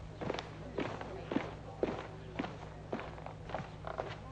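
Footsteps of two men in hard-soled shoes walking across a floor, a steady pace of about two steps a second, over a low steady hum.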